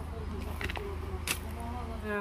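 Faint voices talking at a distance over a steady low rumble, with a few light clicks about a third of the way in and again just after halfway.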